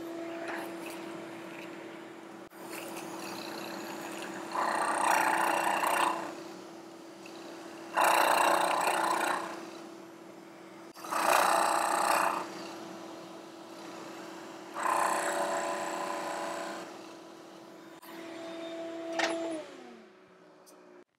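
Milling machine spindle running with a steady hum while its cutter mills a pocket in purpleheart hardwood, with four loud bursts of cutting, one every three to four seconds, as the cutter is fed into the wood. Near the end the motor is switched off and its hum falls in pitch.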